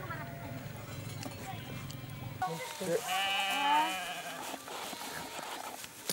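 A lamb bleating in quavering calls about halfway through, after a steady low rumble in the first couple of seconds.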